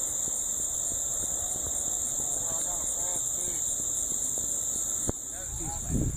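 A steady high-pitched whine with faint distant voices underneath and a single click about five seconds in; the whine fades out near the end.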